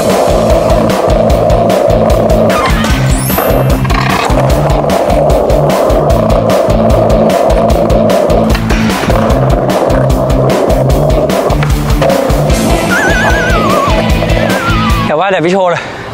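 Skateboard rolling on paved ground and sliding along a metal bench rail in a boardslide, under background music with a steady beat.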